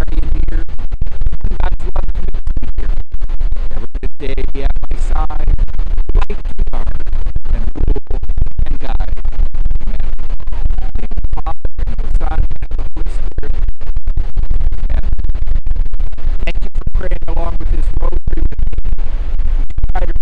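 Strong wind buffeting the phone's microphone, a loud, constant rumble with crackle that nearly drowns out a man's voice.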